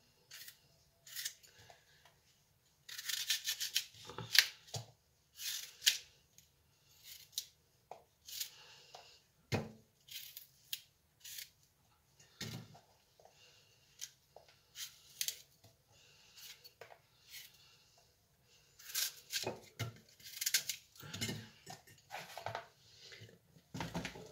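Kitchen knife cutting through fresh apples and apple pieces being dropped and pressed into a glass jar: irregular crisp cuts, knocks and scrapes with short pauses between them.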